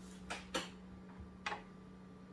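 Computer mouse clicking: a quick pair of sharp clicks in the first second, then a single click about a second and a half in, over a faint steady hum.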